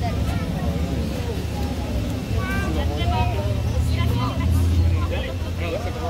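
Indistinct voices of people talking around the touch pool, over a steady low rumble.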